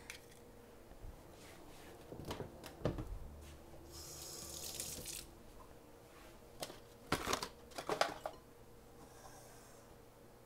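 Scattered knocks and clinks of kitchen utensils and bowls being handled on a counter, with a brief hiss about four seconds in. The loudest knocks come close together between seven and eight seconds in.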